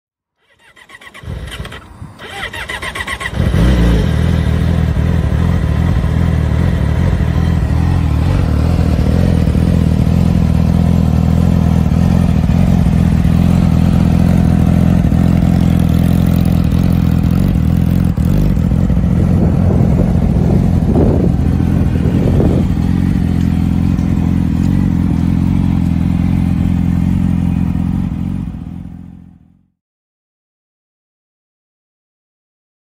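Yamaha YZF-R6 inline-four sportbike engine being started: a few seconds of cranking, then it catches and idles steadily. The sound fades out near the end.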